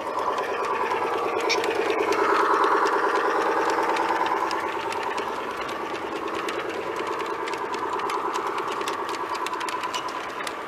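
G-scale model train running past on a garden railway: the locomotive's electric motor and gear drive hum steadily with a fast fluttering rhythm, and the wheels click lightly on the track. The hum swells about two to three seconds in.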